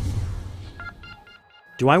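Electronic intro sting: a low rumble fades out, then a quick run of short, high electronic beeps follows, before a man's voice starts near the end.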